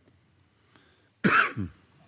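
A person coughing once, loud and sudden, a little over a second in, with a shorter second cough right after. Before it there is only quiet room tone.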